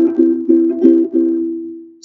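Ukulele strummed: a few strokes of a chord in the first second, then the last chord left to ring and fade away.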